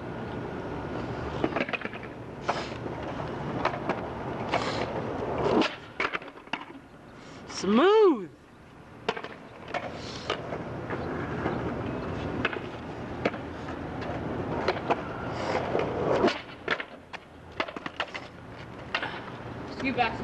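Skateboard wheels rolling over rough asphalt, broken by repeated sharp clacks of the board's tail, landings and impacts against a concrete ledge. About eight seconds in, a voice gives one long shout that rises and falls in pitch.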